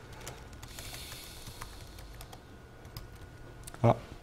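Typing on a laptop keyboard: scattered, irregular key clicks as shell commands are entered. A man's short 'ah' near the end is the loudest sound.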